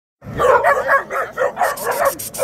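Several puppies barking and yipping in a fast, overlapping run, starting about a quarter second in.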